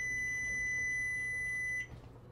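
Microwave oven's cooking-finished beep: one long, steady, high-pitched tone that cuts off sharply near the end, signalling that the potato steaming inside is done.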